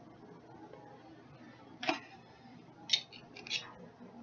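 Metal cutlery clicking against a plate while eating: three short clicks, the last two about half a second apart.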